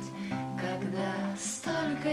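Nylon-string classical guitar fingerpicked, plucked bass notes under ringing higher strings, in a short instrumental gap between sung lines.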